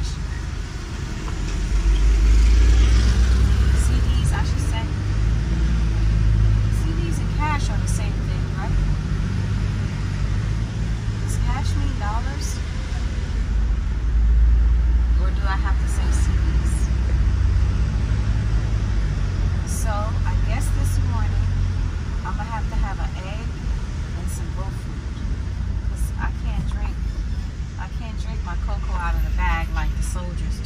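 Engine and road noise heard from inside a moving Hyundai van's cabin: a steady low rumble that grows louder twice, a couple of seconds in and again about halfway through.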